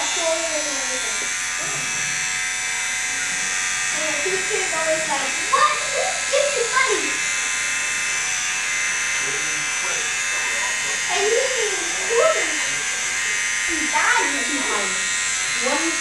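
Corded electric hair clippers running with a steady buzz as they cut a boy's hair into a temp fade.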